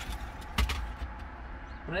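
Sharp plastic clicks from a dashboard trim panel being handled and worked loose with a plastic pry tool: a faint one at the start and a louder one just over a quarter of the way in. A low steady rumble runs underneath.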